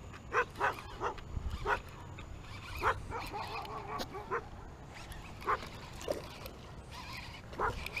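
A dog barking in short single barks at irregular intervals, roughly nine in all.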